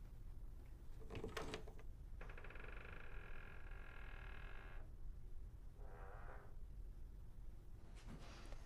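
A click, then a long, steady creak lasting a couple of seconds, and a shorter creak about a second later.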